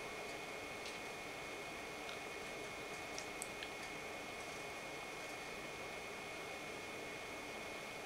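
Quiet room tone: a steady hiss with a faint, thin high-pitched whine, broken by a few faint small ticks in the first half.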